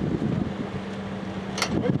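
Rear hatch of a Toyota van pulled down and shut, with a sharp slam about one and a half seconds in, over a steady low hum.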